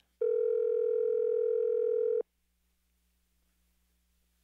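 Telephone ringback tone on an outgoing call: one steady ring about two seconds long that cuts off sharply, while the called phone rings unanswered.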